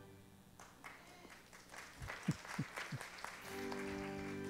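About three seconds of scattered light claps and knocks with a few low thumps, from a congregation in a large room. Sustained keyboard chords start again near the end.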